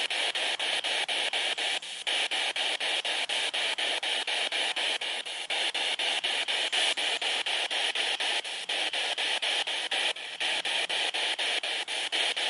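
Spirit box scanning radio frequencies: a steady hiss of radio static chopped into short bursts about four times a second.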